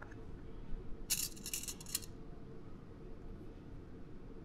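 Steel dissecting pins being handled against the dissecting pan, a quick run of small metallic clicks lasting about a second, over a low steady room hum.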